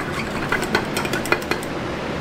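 Stir stick clinking and scraping against the inside of a glass measuring cup as liquid soft plastic is mixed: a run of irregular clicks over a steady background noise.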